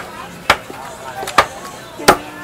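Meat cleaver chopping raw chicken on a wooden chopping block: two sharp strikes about a second apart.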